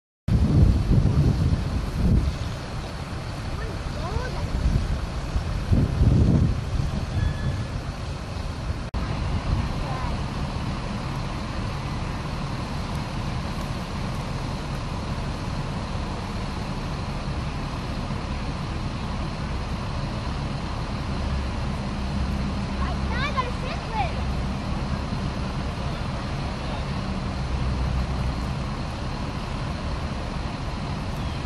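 Steady low rumble of road traffic, with wind buffeting the microphone in gusts near the start and again about six seconds in.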